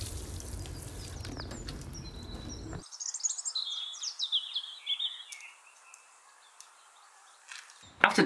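Water spraying from a watering can's rose onto bare soil, a steady hiss that cuts off suddenly about three seconds in. Then a bird chirps a quick series of short, high, falling notes for a couple of seconds before it goes nearly quiet.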